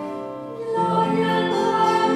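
Choir of nuns singing a sung part of the Lauds office in sustained chords. A held chord fades, and a new, louder phrase begins just under a second in.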